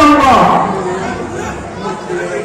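A man's loud stage declamation, his voice gliding down in pitch and ending about half a second in, followed by quieter voices in a hall.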